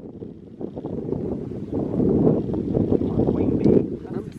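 Wind buffeting the microphone: a low, unpitched rumble that grows louder about halfway through and drops away just before the end.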